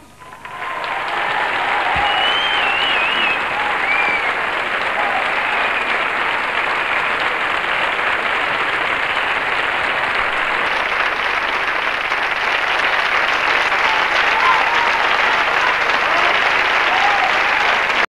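Studio audience applauding steadily, starting about half a second in as the rumba ends, with a few shouts and whistles over the clapping early on.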